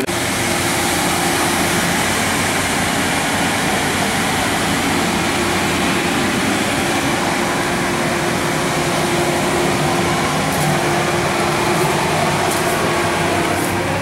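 Steady, unbroken rushing noise with a constant low hum running under it, like machinery or a ventilation blower running.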